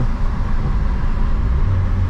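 Turbocharged VW Polo 1.6 EA111 eight-valve engine running with road noise while driving, heard inside the cabin: a steady low drone, with a steadier engine hum coming in near the end.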